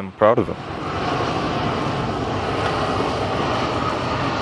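Twin-engine jet airliner on landing approach, gear down, its engines making a steady, even rushing noise that begins about half a second in.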